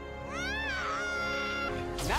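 Animated TV episode soundtrack: music with held notes under a high wail that slides up, dips, then holds one steady pitch for about a second before stopping just before the end.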